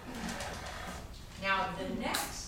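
Brief, indistinct human voice in a room, with a low hum-like sound early on and a louder spoken stretch near the end.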